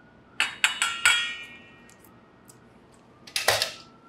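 A metal spoon clinking against a stainless steel mixing bowl, four quick strikes in the first second with the bowl ringing on briefly after them. Near the end comes a short rushing noise.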